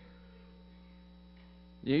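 Steady electrical mains hum from the sound system during a pause in speech; a man's voice starts again near the end.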